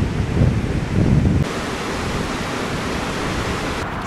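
Ocean surf breaking on a beach, with wind buffeting the microphone for about the first second and a half, then a steady, even wash of surf noise.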